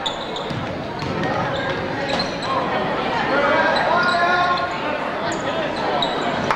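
Basketball bouncing on a gym's hardwood court during live play, under the steady chatter and calls of a crowd of spectators.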